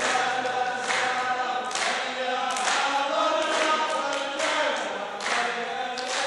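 A group of men chanting in unison in a traditional Saudi line chant, with the rows clapping their hands together about once a second in a steady beat.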